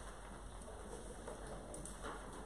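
Quiet room tone: a faint steady hiss, with soft rustling of papers being handled.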